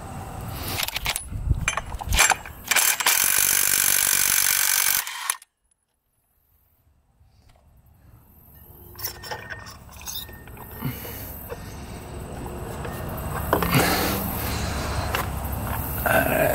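A wrench undoing the nut on a Suzuki Eiger 400 ATV's primary (drive) clutch: a loud steady mechanical rattle for about three seconds, then it cuts off. Later come scattered metal clicks and clinks as the clutch parts are worked off the shaft.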